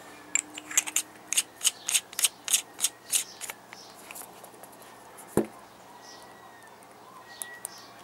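The threaded metal battery tube of a tube mod is screwed together over an 18650 battery. There is a run of light clicks, about three a second, for the first three seconds or so, then one sharper click about five seconds in.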